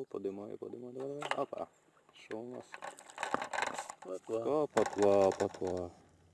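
Fishing reel being wound, a run of fine mechanical clicking through the middle, as a roach is reeled in and lifted out of the water.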